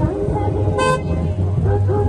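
A car horn gives one short toot just before the middle, over music and voices.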